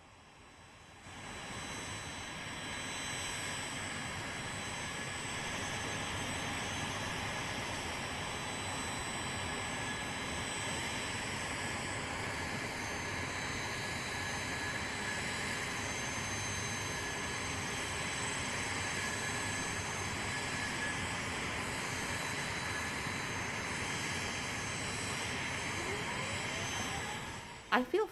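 Recorded sound effect of a jet airliner: a steady rushing engine noise with faint high whines. It fades in over the first few seconds and stops abruptly near the end.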